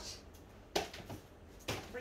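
A single sharp knock about three-quarters of a second in, over faint room tone, as rubbish is thrown out.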